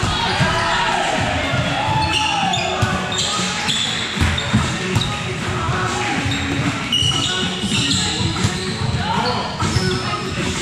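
Volleyball play in a gym: a ball being struck and hitting the floor again and again at irregular intervals, mixed with players' voices.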